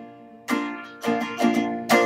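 Guitar playing the song's instrumental Bb riff between verse and chorus: a run of strummed chords starting about half a second in, after a brief lull.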